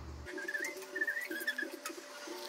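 Birds calling: short, wavering, higher-pitched calls over a row of short, low, repeated notes.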